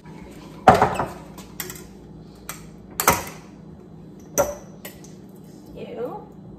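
Clinks and knocks of kitchen items being handled on a countertop, a glass jar and a spoon among them: about seven separate strikes, the loudest about a second in.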